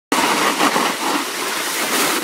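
Steady scraping hiss of sliding downhill over groomed snow, picked up while riding, with wind rushing on the microphone.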